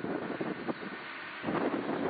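Wind buffeting the camcorder's microphone, a rushing noise that grows louder about one and a half seconds in.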